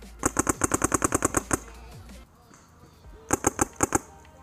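Paintball marker firing close by in two rapid strings, about ten shots a second: a long burst of about a dozen shots, a pause, then a short burst of about five near the end.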